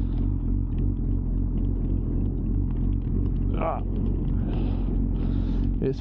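Suzuki GSX-R 600 K9's inline-four engine idling steadily with the bike at a standstill.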